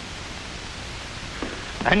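Steady hiss of an old 1940s film soundtrack, with no other sound until a man's voice starts near the end.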